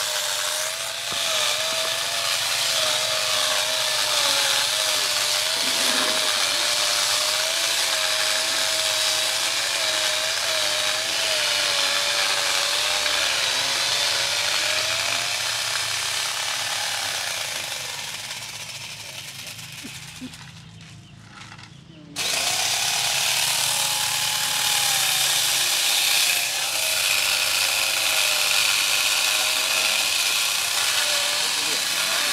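A machine running steadily: a slightly wavering whine over a loud hiss. It fades away about twenty seconds in and comes back suddenly about two seconds later.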